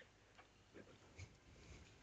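Near silence, with two faint ticks a little under and a little over a second in: keystrokes on a computer keyboard.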